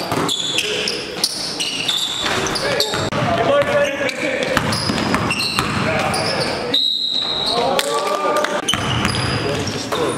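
Indoor basketball game on a gym court: a basketball bouncing as it is dribbled, short high sneaker squeaks on the hardwood, and indistinct players' voices, all echoing in the large hall.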